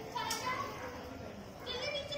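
Faint background voices, short pitched calls near the start and a higher one about a second and a half in, over a low steady background noise.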